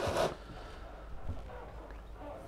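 A short rustle at the start, then a faint low steady hum with light handling and clothing noises and a small tick about halfway through.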